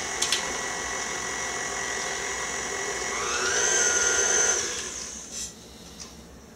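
KitchenAid tilt-head stand mixer running with a wire whip in its steel bowl. The motor whine steps up in pitch about three seconds in, then winds down and stops about five seconds in.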